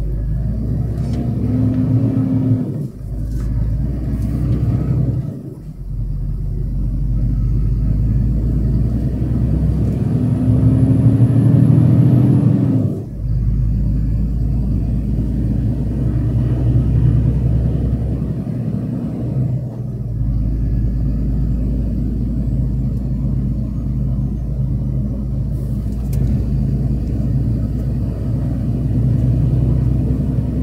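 A truck's diesel engine heard from inside the cab while driving, its pitch climbing and then dropping off abruptly several times as the throttle and gears change.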